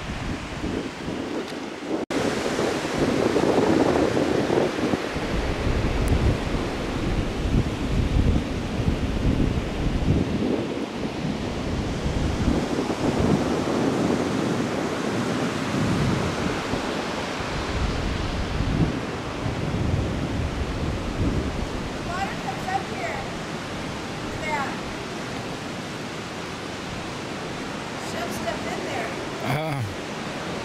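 Ocean surf washing on the shore, with gusts of wind buffeting the microphone that ease off near the end.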